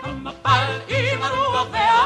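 Old recording of a lively Hebrew pop song. A singer holds notes with a wide vibrato over a bass line; after a brief dip, the voice comes back in about half a second in.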